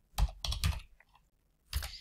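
Computer keyboard keystrokes: a few quick clacks in the first second, then another short bunch near the end, typing keyboard shortcuts to format a cell in Excel.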